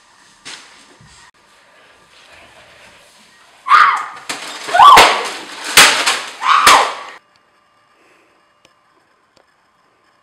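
A burst of loud cries or shouts mixed with sharp knocks and slams, starting about four seconds in and lasting about three seconds.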